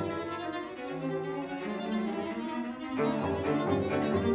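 String quartet (two violins, viola and cello) playing sustained, layered bowed notes, with the cello low underneath. A new, louder chord enters about three seconds in.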